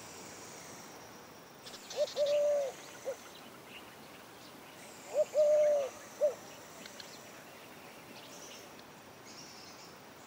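A bird calls twice, about three seconds apart; each call is a three-note phrase on one pitch: a short note, a long held note, then a short note.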